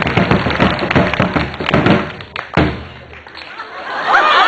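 Tall drums beaten fast with sticks by two drummers, a dense run of strikes that ends on one final hit about two and a half seconds in, followed by quieter crowd noise.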